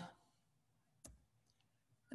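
Near silence, broken by one short click about a second in and a fainter tick half a second later, from a computer's keys or mouse.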